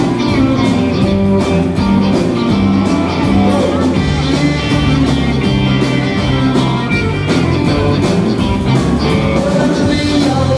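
Live rock band playing an up-tempo passage on electric guitars, bass guitar and drums with a steady beat.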